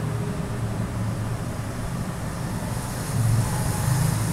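A steady low background rumble, like distant motor traffic or a running machine, growing a little louder about three seconds in.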